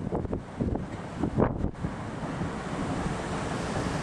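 Strong wind buffeting the microphone: an uneven, gusty low rumble that surges and drops.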